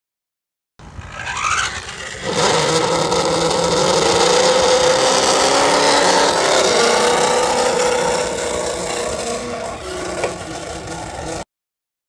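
Radio-controlled cars running: a steady motor whine with scraping and rattling. It starts a little under a second in and cuts off abruptly near the end.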